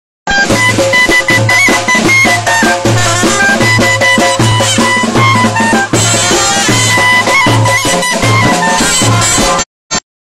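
A baladi street band of clarinets playing a stepping, ornamented melody over a steady drum beat of about two strokes a second. The music cuts off suddenly near the end.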